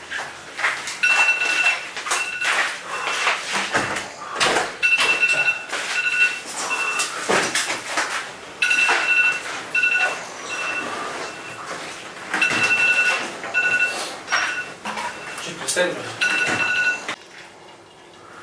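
Cotton bedsheets rustling and flapping as they are shaken out and spread over a person lying down. Through it a high, steady tone sounds again and again in short pulses, in groups of two or three.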